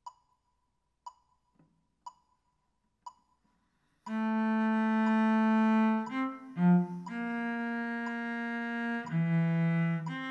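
A metronome clicking once a second, then a cello coming in about four seconds in with long, sustained bowed notes that change pitch every one to two seconds, the clicks still faintly audible beneath.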